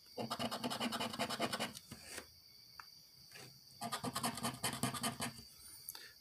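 The edge of a round token scraping the coating off a scratch-off lottery ticket, in two runs of rapid back-and-forth strokes of about a second and a half each, with a pause between them.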